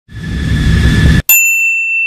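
Intro sound effect: a loud rushing noise with a faint steady tone under it for about a second, cut off sharply by a bright bell-like ding that rings on.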